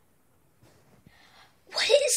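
Near-quiet room tone with a faint, brief hiss about a second in, then a girl starts speaking loudly near the end.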